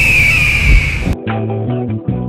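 Intro sound effect: a high whistling tone, falling slightly, over a rumbling noise. It cuts off suddenly about halfway through, and music with plucked bass and guitar notes starts.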